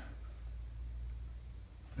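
Quiet room tone: a steady low hum with faint high-pitched tones above it.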